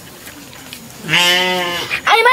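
A girl's loud wail: one long held cry, starting about a second in and lasting about a second.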